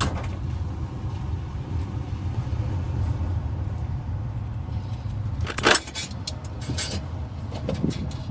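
Steady low rumble of street traffic heard from inside a payphone booth. A sharp knock comes a little over halfway through, followed by lighter clicks and rattles as the payphone handset is taken up and handled.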